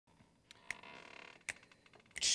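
A few faint, sharp clicks over a low hiss.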